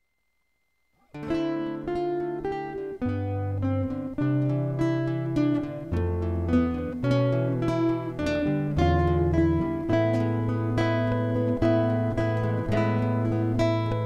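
Solo acoustic guitar (violão) playing the song's instrumental introduction: plucked chords over a moving bass line, starting about a second in after silence.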